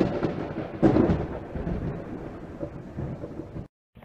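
Thunder sound effect: a crack and rumble at the start, a second surge about a second in, then a rolling rumble that fades and cuts off suddenly near the end.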